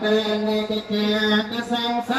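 Theravada Buddhist Pali chanting, recited on one steady low pitch in held syllables with short breaks between phrases.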